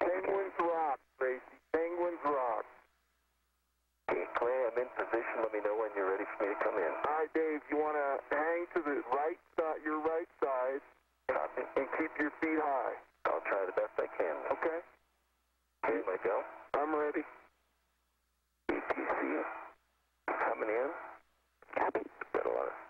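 Voices over a spacewalk radio loop: thin, narrow-band radio speech in several separate transmissions, each cutting in and out abruptly with silence between them.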